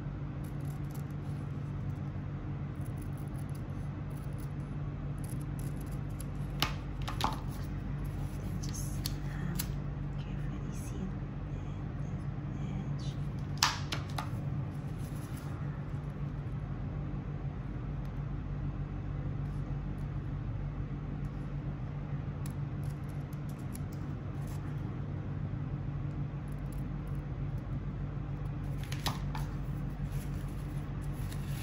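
Fiskars scissors snipping grosgrain ribbon, trimming the bow's edge: a few sharp snips, two close together, another about halfway, and a last click near the end, over a steady low hum.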